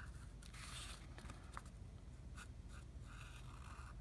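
Faint scratching of a fine-point permanent marker drawing short strokes on paper, in a few separate strokes with some soft ticks between.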